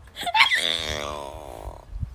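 A long wailing moan in a woman's voice, starting sharply about half a second in and held for over a second before it fades.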